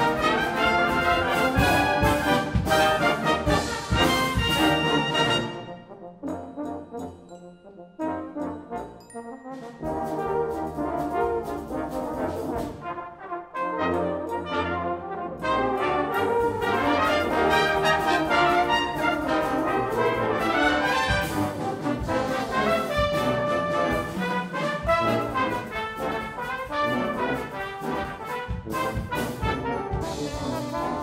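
Brass band of cornets, horns, euphoniums, trombones and tubas, with drum kit, playing a blues-style concert piece. It is loud and full with drum hits at first, thins and drops quieter for a few seconds about a fifth of the way in, then the full band comes back in for the rest.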